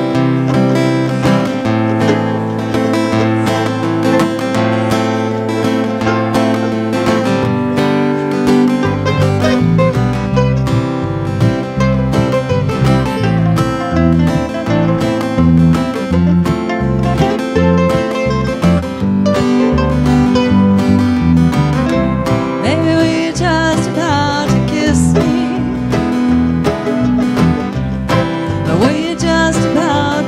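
Live acoustic band playing the opening of a country-style song: acoustic guitar strumming, with electric bass coming in about nine seconds in and further string and lead instruments joining in.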